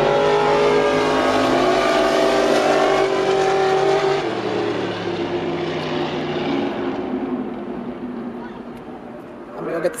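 Cars racing on an ice drag strip on a frozen lake, their engines running hard. The sound is loudest for the first four seconds, then fades away over the next five or so.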